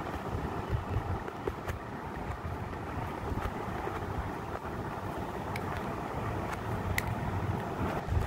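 Steady low rumble and hiss of background noise, with a few faint clicks scattered through it.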